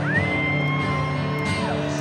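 Live country band playing in a stadium, heard from the crowd, between sung lines. A shrill whistle from the crowd rises in, holds steady for about a second and a half, then drops away.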